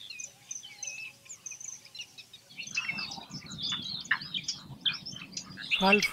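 Small birds chirping all through. From about halfway there are soft rustling and several sharp clicks from fresh green pea pods being split open by hand, with peas dropping onto a steel plate.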